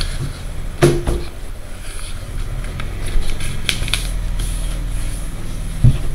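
A sheet of printer paper being folded and creased by hand on a wooden table: a few short crinkles and taps, the loudest a thump near the end, over a steady low hum.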